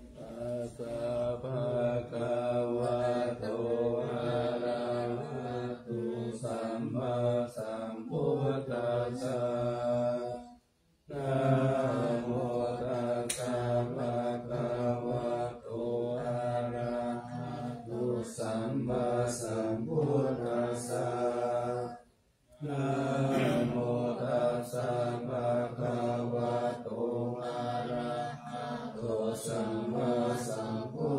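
Buddhist monks chanting Pali verses for the morning chanting service, a sustained recitation that breaks briefly twice, about eleven and twenty-two seconds in.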